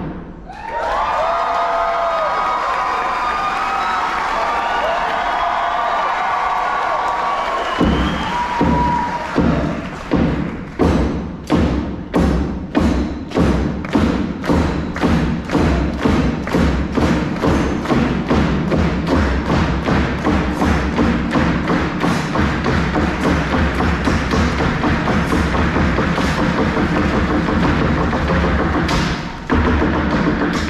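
Live stage percussion. The first several seconds hold wavering tones, then heavy drum strikes start about eight seconds in and keep a steady beat of roughly two a second, filling in denser as the rhythm builds.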